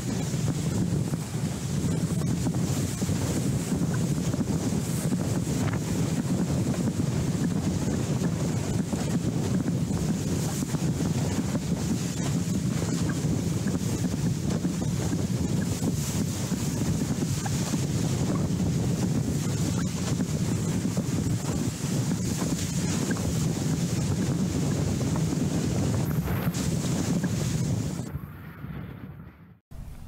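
Strong wind buffeting the microphone, with water rushing and spraying past a windsurf board sailing fast across choppy water. The noise stays steady throughout.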